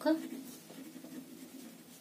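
Pen writing on paper: a few short scratching strokes as a word is written out. A voice trails off at the very start, and a faint low hum runs under the writing.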